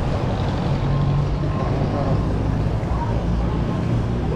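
Steady low rumble of city street traffic with a vehicle engine running close by, and faint voices of people nearby.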